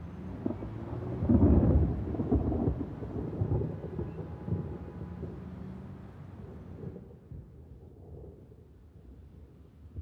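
A deep low rumble over a steady low hum, swelling about a second and a half in and then slowly fading away.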